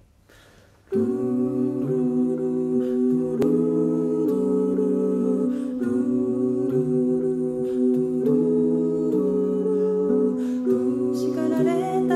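A five-voice a cappella group singing sustained wordless chords, entering about a second in, with the harmony shifting every second or so over a moving bass voice.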